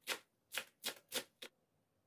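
Kitchen knife chopping Chinese cabbage on a cutting board, each stroke cutting through the crisp stalks into the board at about three strokes a second. The chopping stops about one and a half seconds in.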